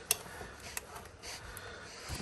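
A sharp click, then a few fainter clicks and knocks, as the pump head is handled and turned on a plastic hand-pump oil filler can.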